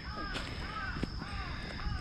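A crow cawing, a run of about four short arched calls, with light footsteps on dry earth and leaf litter.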